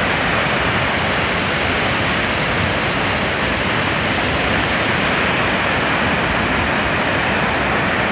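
A massive waterfall: a steady, loud rush of plunging water that does not change.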